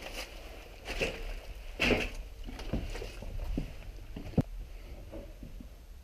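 Footsteps and shuffling over loose rubbish and debris, with scattered knocks and rustles about once a second and a sharp knock about four and a half seconds in.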